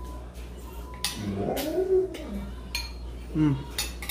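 Spoons clinking lightly against bowls while eating fruit. About a second in comes a drawn-out 'mmm' of enjoyment that rises and falls in pitch, and a short 'mm' near the end.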